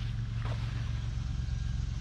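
A steady low hum, with one faint short sound about half a second in.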